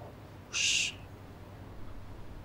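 A single short, high, bright sound effect about half a second in, lasting under half a second.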